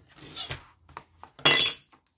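Small handling noises of a washi tape roll being peeled and fingered, then a loud, short clatter about a second and a half in, most likely a metal ruler being put down on the wooden desk.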